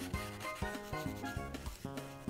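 Prismacolor marker tip rubbing across coloring-book paper as it fills in an area. Light background music with a steady beat plays under it.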